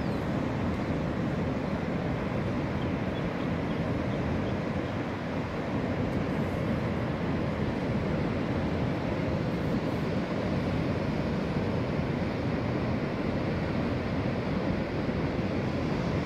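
Steady low roar of ocean surf breaking on a reef, mixed with wind on the microphone; even throughout, with no distinct single events.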